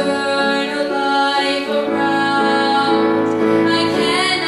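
A teenage girl singing a solo song line with instrumental accompaniment, holding long steady notes.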